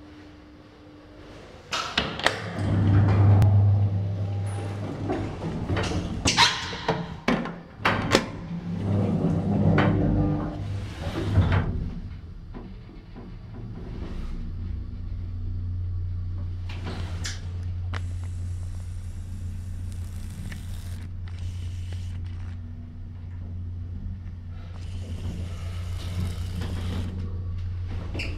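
Mitsubishi Elepet Advance V rope-type passenger elevator: its doors sliding open and shut with loud clunks and clicks in the first half, then a steady low hum as the car rides upward.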